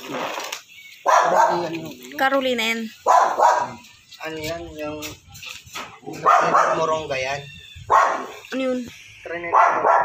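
A dog barking repeatedly, in short loud barks at irregular intervals of about a second.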